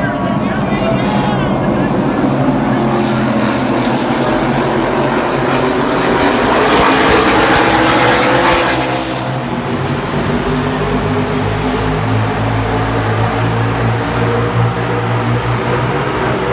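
NASCAR Cup stock cars' V8 engines running on the oval, with the pack growing loudest as it passes about halfway through. It then settles to a steady drone of many engines.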